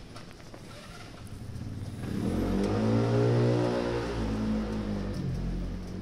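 A motor vehicle's engine running close by for about three and a half seconds, its pitch rising and then falling back as it grows loud and fades.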